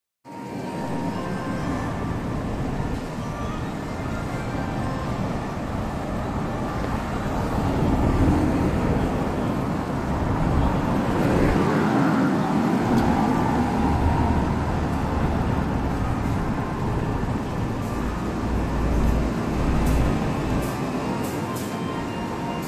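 Street traffic noise with a steady rumble; a small car passes close by around the middle, swelling and fading. A few sharp clicks come near the end.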